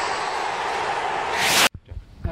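Intro-ident sound effect: a loud, steady noisy wash that swells into a whoosh and cuts off suddenly near the end, leaving a moment of faint room tone.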